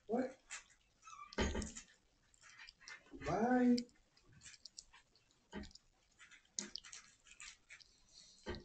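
A short wordless voice sound, rising in pitch, about three seconds in, among scattered soft rustles and clicks.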